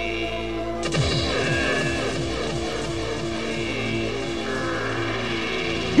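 Trance music from a live rave DJ set: held synth chords, then about a second in a crash and a fast pulse of falling bass notes kick in and drive on steadily.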